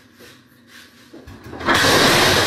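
A glass tabletop shattering on a wooden floor: a few faint knocks and scrapes, then a loud crash of breaking glass that builds up about a second in and peaks near the end.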